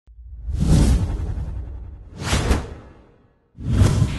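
Three whoosh sound effects from an animated news intro, each swelling and fading with a deep rumble underneath. The first is the longest, a shorter, sharper one follows about halfway through, and a third builds near the end.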